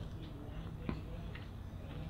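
Faint steady low hum with a few light ticks from a Nebula 4000 Lite 3-axis gimbal just powered on and holding a camera. Its brushless motors are not struggling, so there is no rattle or shake.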